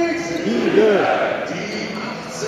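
Stadium public-address announcer's voice, drawn out and echoing around the ground, with voices rising and falling in pitch about half a second in, as the home team line-up is called out.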